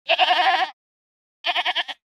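Goats bleating: two quavering calls, the first lasting under a second and the second shorter and more pulsed, about a second and a half in.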